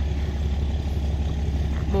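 Wind rumbling steadily on the phone's microphone, a low roar under everything.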